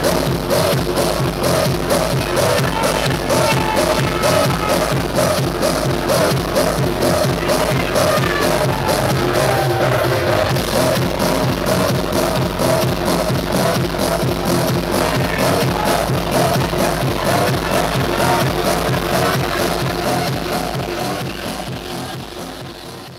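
Electronic dance music from a DJ mix with a steady beat, fading out near the end.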